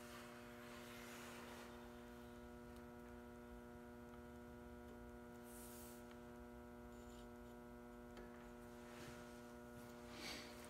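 Near silence with a steady electrical hum, plus a few faint, brief soft noises.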